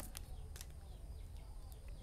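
Faint background ambience: a low steady hum with a few soft, scattered clicks.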